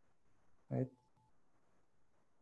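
A single short spoken word ("right?") about two-thirds of a second in, followed by a faint, brief steady tone. Otherwise only faint room tone.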